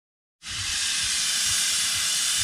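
Pressure cooker venting steam: a loud, steady hiss that cuts in about half a second in.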